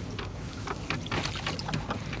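Wet gill net being hauled over the side of a wooden boat, water dripping and splashing off the mesh, with scattered small clicks and knocks of handling, over a low steady rumble.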